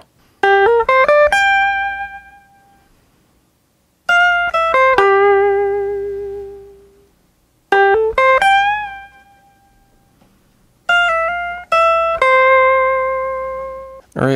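Electric guitar playing a single-note lead line up to tempo in four phrases. Each phrase is a quick run of rising notes ending on a held note that rings out and fades. Some held notes are bent and slowly released, with vibrato.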